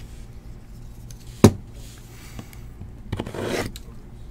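A shrink-wrapped cardboard trading-card box being handled on a table: a single sharp tap about a second and a half in, then a brief scraping rustle of the plastic wrap near the end.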